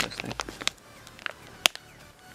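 Handling noise from a plastic packaging bag: a cluster of short crinkles and clicks, then a single sharp click about a second and a half in.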